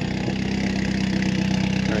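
Off-road buggy's engine idling steadily while it warms up, its exhaust running through a muffler that is now wider end to end.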